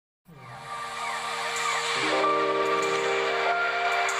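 Background music fading in after a brief silence: sustained synth chords over a whooshing wash, the chord changing about halfway through.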